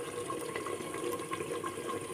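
Chicken and masala gravy sizzling and bubbling in an open pressure cooker over the flame: a steady low sizzle with faint scattered pops.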